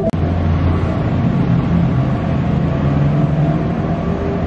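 Road traffic noise: a steady low engine drone with hiss of tyres and wind, starting abruptly just after the beginning.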